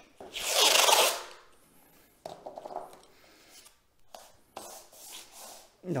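Paper masking tape being unrolled from its roll with a loud rasp for about a second near the start, then quieter rubbing and rustling as the tape is pressed down onto kraft paper.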